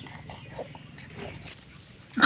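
Puppies lapping and licking at food in plastic dishes: soft, irregular wet clicks and smacks.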